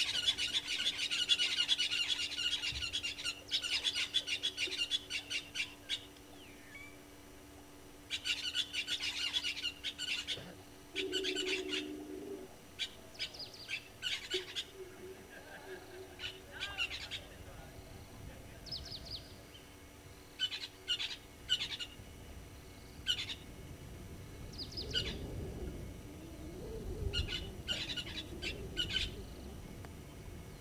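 Wild birds calling at a waterhole: long bursts of rapid, high-pitched chattering calls at the start and again about eight seconds in, then scattered short calls. A short low hooting note sounds about eleven seconds in, and a low rumble sounds near the end.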